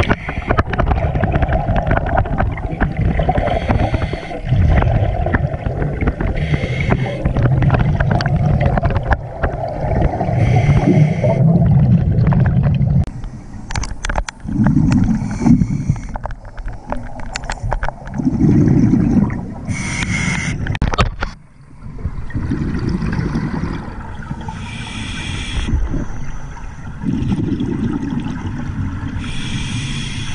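Scuba diver breathing through a regulator underwater. Each inhale gives a short hiss and each exhale a rumble of exhaust bubbles, about every four to five seconds. For the first dozen seconds the bubbling rumble is nearly continuous.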